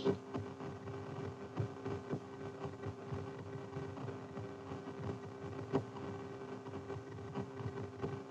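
AN/TPS-25 ground surveillance radar's loudspeaker giving its Doppler audio return from wind-moved tall grass and tree branches: faint, irregular crackling over a steady low hum, with one sharper click about three-quarters through. This is background noise from fixed vegetation, not the return of a moving target.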